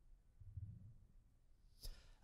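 Near silence: room tone, with a faint low bump about half a second in and a short click just before the end.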